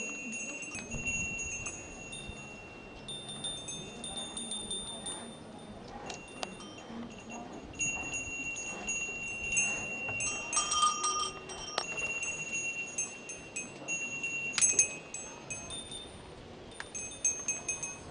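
Small metal bells on goats ringing on and off as the animals move about, each strike ringing on with a high clear tone; the loudest jangles come a little past halfway and again about three-quarters through.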